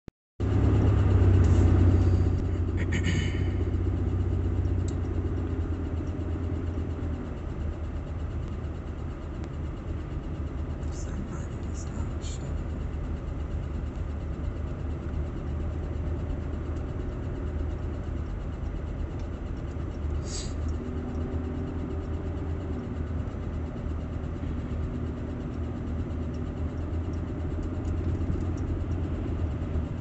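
Car engine running, a steady low rumble heard from inside the cabin, louder for the first two seconds, with a few faint clicks.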